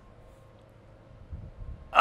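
Quiet background with a faint steady hum and a few low, muffled rumbles near the end.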